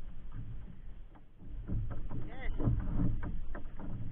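A low rumble that swells about a second and a half in, with scattered clicks and rustles of fishing tackle and a plastic bag being handled on a bamboo deck, and a brief voice near the middle.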